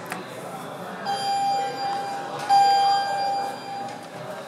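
Elevator arrival chime ringing twice at the same pitch, about a second and a half apart, the second stroke louder, each fading as it rings. A click from the call button being pressed comes just before.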